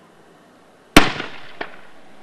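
One loud, sharp bang from a crowd-control weapon about a second in, with a trailing echo, then a fainter crack about half a second later.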